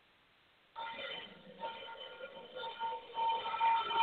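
A musical sound effect of several held electronic tones. It starts about a second in, after a moment of silence.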